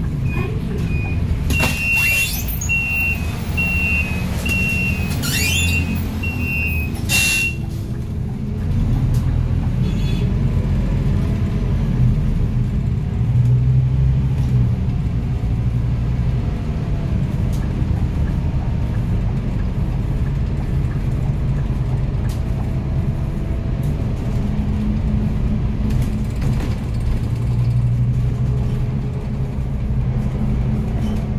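Inside a moving city bus: a steady low drone of the bus engine and road noise, which gets louder about eight seconds in and stays up. Near the start, a run of short high electronic beeps goes on for about six seconds, with a clunk at its start and end.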